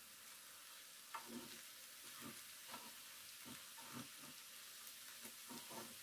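Wooden spatula stirring and tossing chopped vegetables and sago in a non-stick frying pan, about ten soft scraping strokes over a faint steady sizzle of frying.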